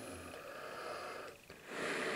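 Faint breathing through a British Light Anti-Gas Respirator and its screw-on filter. There is a short gap about a second and a half in, then a slow, steady breath out begins near the end: an exhale kept as slow as possible so the mask's lenses, which have no nose cup, don't fog.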